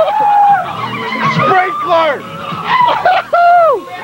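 A group of people laughing and whooping, with several high cries that slide down in pitch, the longest near the end.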